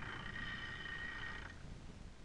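Clipper masonry saw's blade cutting a slab of oil shale (marlstone), a faint steady whine that fades out about one and a half seconds in.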